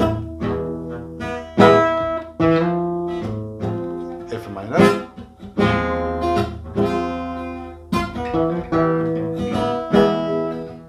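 Acoustic guitar strummed, one chord after another about once a second, each chord left to ring before the next.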